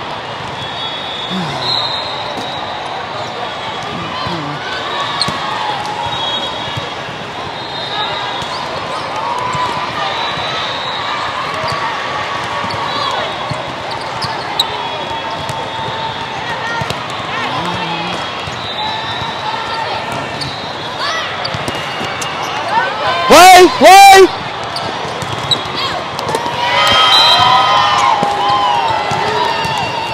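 Volleyball rally in a large, echoing hall: a steady hubbub of many overlapping voices, with the thuds of the ball being hit. Two loud shouts close by come about three quarters of the way through, and a louder burst of voices follows near the end as the point is won.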